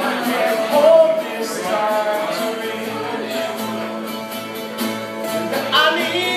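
Two acoustic guitars strummed in a live duo performance, with a voice singing a melody over them.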